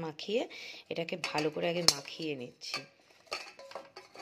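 Clinks and knocks from a stainless steel bowl as a large fish head is turned and rubbed with salt in it, with one sharp clink a little before halfway.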